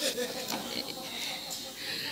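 Quiet laughter and low murmuring from a congregation, with faint scattered voices.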